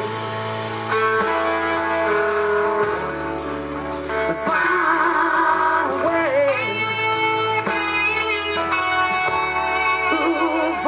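Live band playing a slow country ballad: acoustic and electric guitars with bass and drums.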